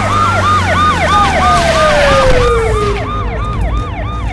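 Emergency vehicle siren in a fast yelp, rising and falling about four times a second, over a low vehicle engine rumble. A second long tone glides downward between about one and three seconds in.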